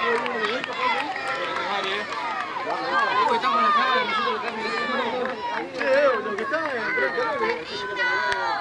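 Many high-pitched voices of women and girls shouting and calling over one another, unintelligible. These are the players and onlookers at a women's football match during play.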